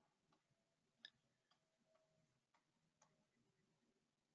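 Near silence, with a few faint, irregular ticks from a stylus tapping on a writing tablet as handwriting goes on.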